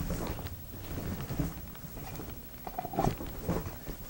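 Stiff nylon softbox fabric rustling and crinkling as it is handled, with irregular light clicks and knocks from the support rods being bent into the material.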